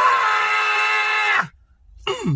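A man's loud, sustained scream held on one steady pitch for about a second and a half, then stopping abruptly.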